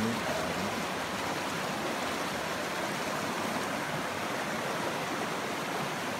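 Shallow rocky river rushing over stones and through small rapids, a steady, even sound of running water.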